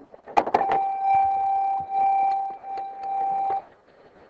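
A few short clicks, then a steady, high-pitched tone held for about three seconds with a brief break before it stops.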